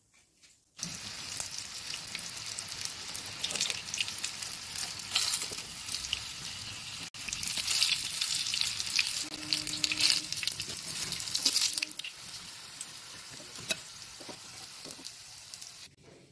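Coated prawn-stuffed chilli cutlets sizzling as they shallow-fry in hot oil in a pan, with occasional clicks of a metal spatula turning them. The sizzle starts about a second in and grows softer in the last few seconds.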